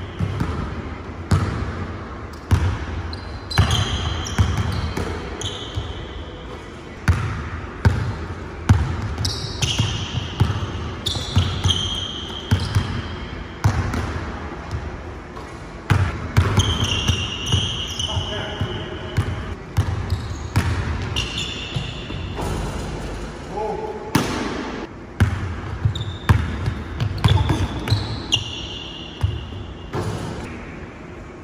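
Basketball bouncing repeatedly on a hardwood gym floor during dribbling, with frequent short high-pitched squeaks of sneakers on the wood as players cut and stop.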